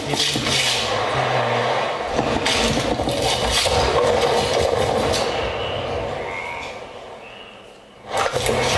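Dense scraping, rasping noise texture from a live experimental electronics performance. It has a low hum under it for the first couple of seconds and fades out near the end.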